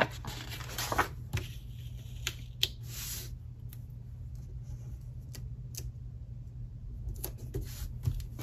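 Paper handling: the pages of a disc-bound planner and a sticker sheet rustling, with scattered soft clicks and taps and a brief louder rustle about three seconds in, as a small sticker is peeled and pressed down. A steady low hum runs underneath.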